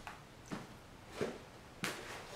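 Four faint, short mouth sounds about half a second apart as a red chili-coated hard lollipop is licked and tasted.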